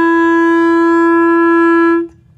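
Bb clarinet holding one long, steady note, which stops abruptly near the end.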